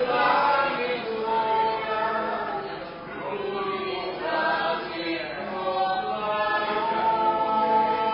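A folk trio's voices singing together in harmony.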